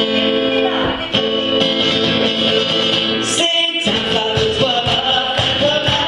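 Live acoustic-electric guitar strummed in a steady rhythm with other instruments and a singing voice, the music breaking off briefly a little past the middle.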